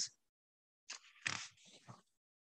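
Faint breath and mouth noises of the reader between sentences: a few short, soft bursts of breathing about a second in.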